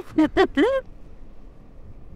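A man's voice, short and excited, for the first second, then a low steady rush of wind and road noise from riding an electric scooter.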